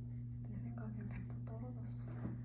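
A woman murmuring quietly, almost a whisper, over a steady low hum.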